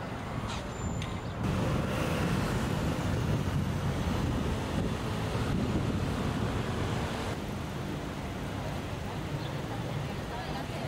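City street ambience: a steady hum of traffic noise, louder for a stretch from about one and a half to seven seconds in.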